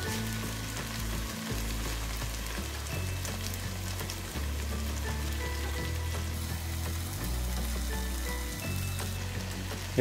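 Onion-tomato masala frying in oil in a cooking pot, with a steady, even sizzle as pieces of fried okra are tipped in.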